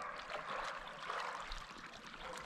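Faint, irregular wash of small waves lapping at a lakeshore.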